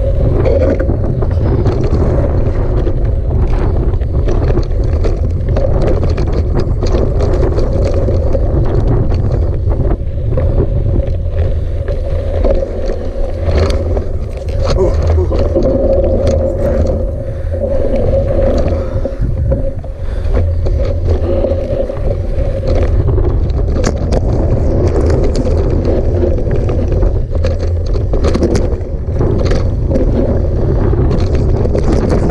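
Wind buffeting the microphone of a handlebar-mounted camera on a hardtail mountain bike rolling down a rocky dirt trail. It makes a loud, steady low rumble, with frequent sharp clicks and rattles from the tyres and bike going over gravel and stones.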